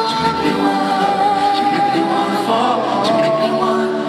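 Live male pop vocal group singing slow, held multi-part harmonies, with almost nothing in the bass beneath the voices.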